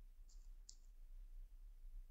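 Near silence with two faint, short clicks less than half a second apart, a third of the way in, as letters are typed into a search box.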